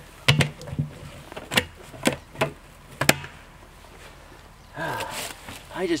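Plastic five-gallon buckets being handled, a lid pressed down onto one: about seven sharp knocks and snaps over the first three seconds, then a brief rustle.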